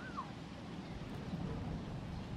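One short high squeak right at the start, falling quickly in pitch, from an animal, over a steady low outdoor rumble.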